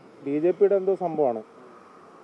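A voice speaking for about a second and a half, followed by a faint steady hum.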